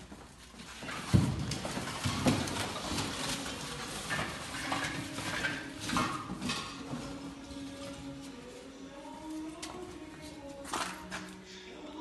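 Small hard sculpture pieces clattering and knocking against one another as they are handled, with a cluster of sharp knocks in the first few seconds and lighter clicks after.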